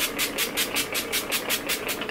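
Pump-spray bottle of rose water facial toner being pumped rapidly, a quick, even run of short misting hisses, about six sprays a second.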